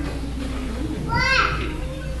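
Low murmur of children's voices, with one brief high-pitched child's voice rising and falling a little over a second in.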